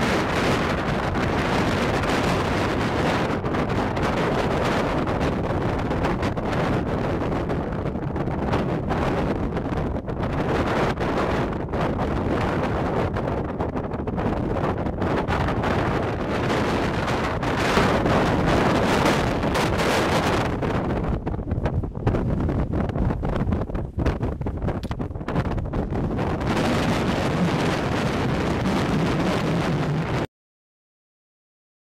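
Wind buffeting the camera's microphone: a dense, deep rushing noise that swells and eases in gusts.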